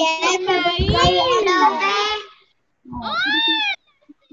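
Children's voices drawn out in long, wavering sung notes over a video call, followed near the end by a shorter note that rises and falls.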